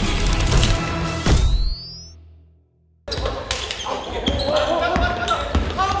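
A short intro music sting with a rising tone, fading out within the first three seconds. Then a basketball being dribbled on a wooden gym court, with sharp repeated bounces.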